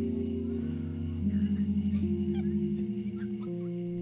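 Slow ambient instrumental music: held notes step to new pitches every second or so. Through the middle, one low note wavers in a quick pulse.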